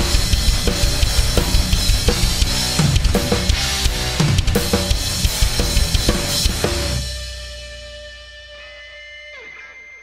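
Acoustic drum kit played fast, with bass drum, snare and cymbals. The playing stops about seven seconds in and the kit rings out as it fades.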